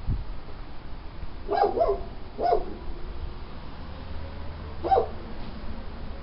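A dog barking: a quick double bark, another just after it, and a single bark near the end.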